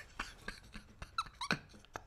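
A man's suppressed, breathy laughter: short wheezing gasps with a few high squeaks.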